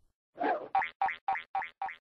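Cartoon transition sound effect: a quick run of short, springy pitched blips, about six a second, starting just under half a second in and fading away.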